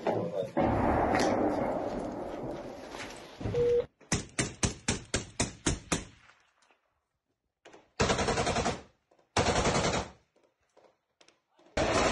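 Gunfire: a quick string of about ten sharp shots, roughly four a second, each with a short echo, about four seconds in. It comes after a loud, noisy stretch and is followed by two further loud bursts of about a second each near the end.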